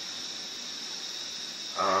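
A steady, even high-pitched hiss with nothing else happening; a voice starts right at the end.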